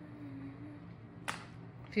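A single sharp click about a second in, over a faint steady hum of the room, as plastic tableware and a lunch box are handled.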